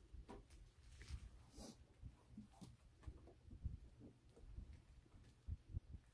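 Faint, scattered rustling and soft knocks of nylon webbing straps and fabric being worked around the bottom of a pickup's back seat, with a few dull low bumps.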